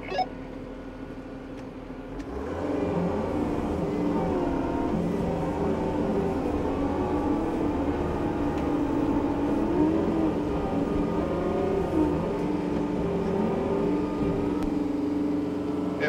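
Tractor diesel engine throttling up about two and a half seconds in, then running hard under load with a wavering pitch as it pulls on tow straps to drag a stuck skid steer out of soft ground.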